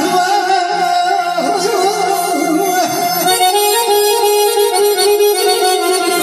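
Live Azerbaijani wedding band music played loud through the hall's speakers: a melody of long held notes that waver in pitch, over keyboard accompaniment.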